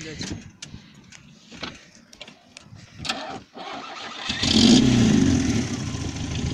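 Carburetted Lada four-cylinder engine starting after a series of sharp clicks. It catches about three and a half seconds in, revs up loudly for a moment, then settles into a steadier idle.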